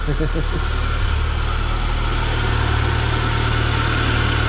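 Chevrolet Celta's four-cylinder engine idling steadily, with a small change in its note about a second in. It has just started for the first time after a timing belt and water pump replacement.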